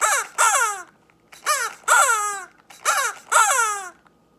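A squawky, bird-like puppet voice imitating a cuckoo's two-note call, three times over, each pair of notes sliding downward in pitch.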